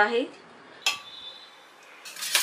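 A single sharp metallic clink about a second in, ringing briefly: a steel spoon and a stainless steel mixer jar knocking together.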